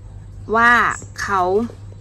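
A woman speaking Thai: two short spoken words, the first drawn out and emphatic with a falling pitch, over a faint steady low hum.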